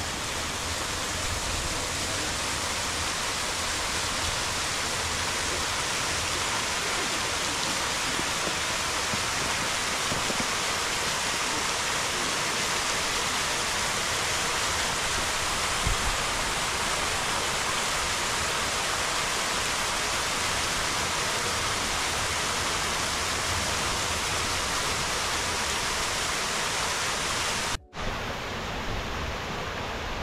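Steady rush of the Grand Cascade's fountain jets and falling water at Peterhof. About two seconds before the end it cuts out for an instant and resumes slightly duller.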